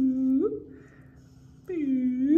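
A man humming two playful notes, each sliding down in pitch, holding low and sliding back up, with a quieter gap between them.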